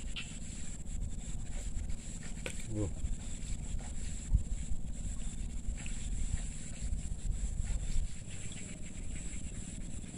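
Outdoor ambience at a ricefield ditch: a steady high-pitched insect drone over a low, uneven rumble, with a short "wuh" exclamation about three seconds in.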